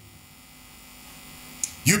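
Steady low electrical mains hum from the microphone and sound system, heard in a pause between words; a man's voice comes in near the end.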